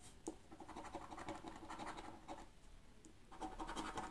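A coin scratching the scratch-off coating from a paper lottery scratch card, in two runs of rapid strokes with a short pause between them.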